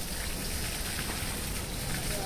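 Steady hiss of spraying water.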